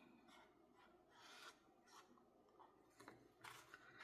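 Near silence, with faint rustling and rubbing of hands handling a small paper card, a couple of soft scrapes about a second in and near the end.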